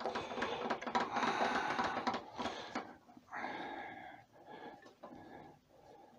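Laguna 1836 wood lathe's tailstock being wound in to press an antler fountain pen's parts together between nylon pads: scraping and small clicks, loudest for the first three seconds, then quieter and fading out.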